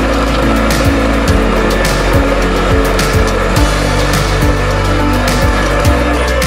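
Background music with a steady beat, over a Diva 28 sewing machine running, its motor, needle bar and rotary bobbin hook making a steady whirring noise that fades out near the end.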